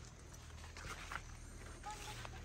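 Faint rustling of leafy greens with a few soft snaps as they are picked by hand, and a short high chirp near the end.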